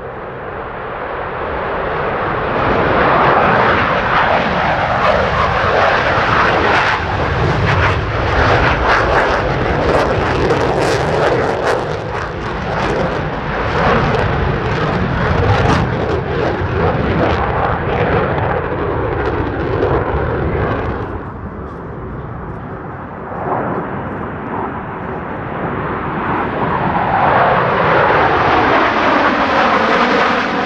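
Blue Angels F/A-18 Super Hornet jet engines at high power as the jets take off and climb: a loud, continuous jet roar with crackle. It eases off around twenty seconds in and builds again near the end as the four-jet Diamond formation comes past.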